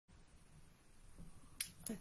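Quiet room tone broken by one sharp click about one and a half seconds in, with a fainter click just after, and then a man's voice begins to speak.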